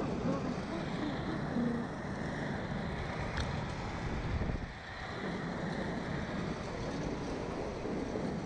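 Wind rushing over the microphone of a camera mounted on a slingshot thrill-ride capsule as it swings through the air. The rush is steady, with a brief easing a little before the middle.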